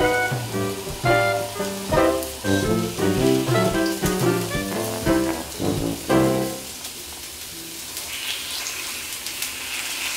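Background music with a melodic, instrumental line that stops about six and a half seconds in. From about eight seconds, food starts sizzling faintly on the hot plate of a Tefal Silvermania electric grill.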